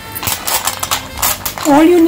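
Clam shells clicking and clattering against each other as a hand moves them about in a bowl: a quick, irregular run of clicks lasting about a second and a half.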